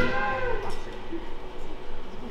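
A live pit band cuts off at the end of a song as a held sung note bends down and fades in the first half-second. A short, quieter lull follows.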